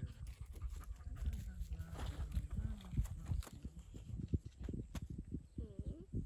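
Faint animal calls over light knocks and rustling from camping and fishing gear being handled.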